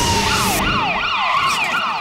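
Cartoon sound effect: a rushing blast with a low rumble, then a siren-like electronic warble that rises and falls about four times a second and cuts off suddenly at the end.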